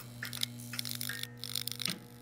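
Neon sign buzz sound effect: a steady electrical hum with crackling and sputtering over it, the hum cutting out briefly near the end.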